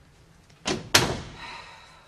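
An interior door being shut: two sharp knocks in quick succession as it meets the frame and latches, the second louder, followed by a short ringing.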